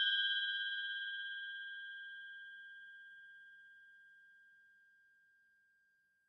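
A struck bell ding sound effect ringing out: one clear high tone with fainter higher overtones, fading steadily until it dies away about four and a half seconds in.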